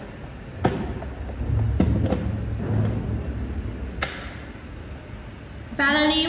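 Welding torch cable plugs and hoses being handled and connected at a welding power source's rear panel: a few separate sharp clicks and knocks, with low rubbing and handling noise between them.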